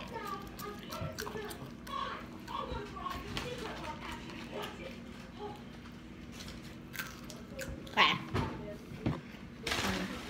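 Low, indistinct boys' voices with mouth and chewing noises as they eat fries. A short, sharp loud sound comes about eight seconds in.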